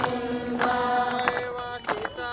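Group of voices chanting in unison on long held notes, with sharp strikes, likely hand claps, keeping time about every half second. The chant breaks off briefly near the end.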